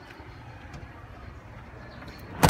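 A low, steady mechanical rumble with a faint click about three quarters of a second in.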